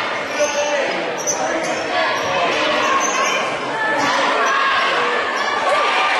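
Basketball dribbled on a hardwood gym floor during play, with players' and bench voices calling out, all echoing in the large gym.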